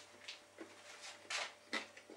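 Faint mouth sounds of someone chewing a forkful of chips and gammon: a few soft smacks and clicks.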